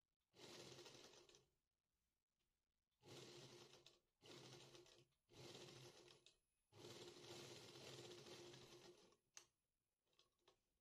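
Near silence: room tone with a few very faint stretches of soft rustling, each a second or two long.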